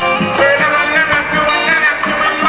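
Live reggae band playing through a concert hall's sound system, heard from the audience.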